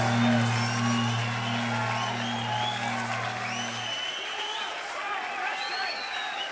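The band's final low note is held, then cuts off about four seconds in. Over and after it, a concert crowd cheers and whistles.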